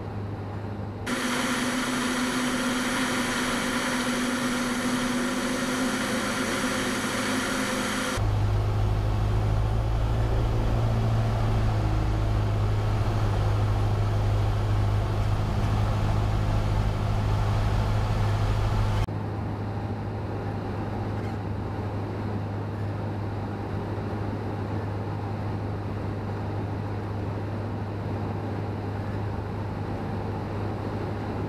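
Cessna 172's engine and propeller droning steadily during final approach. The sound changes abruptly about a second in, again around eight seconds, when a deep rumble takes over, and again around nineteen seconds.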